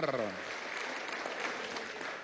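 Applause from the deputies seated in a legislative chamber: steady clapping by many hands, easing slightly toward the end.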